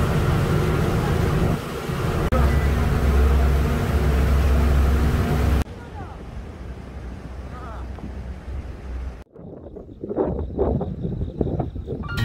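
Wind buffeting the microphone over the low, steady drone of a ferry's engine on the open deck; it cuts off suddenly after about five and a half seconds to quieter outdoor sound, with people talking near the end.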